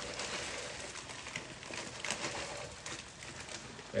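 Frying pan of browned ground beef and potatoes sizzling as frozen peas are poured in from a plastic bag, with a few light clicks scattered through.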